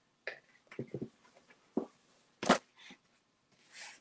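Scattered light clicks, knocks and rustles of objects being handled and set down on a tabletop, with one sharper knock about two and a half seconds in.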